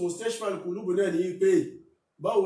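A man's voice speaking without a break and stopping just before the end.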